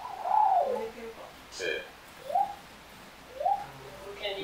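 Small robot art installation giving out strange, wordless voice-like sounds: a string of short gliding coo-like calls, several rising in pitch, with short pauses between them.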